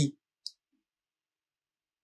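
A man's word trails off right at the start, then a single short, faint mouth click about half a second in.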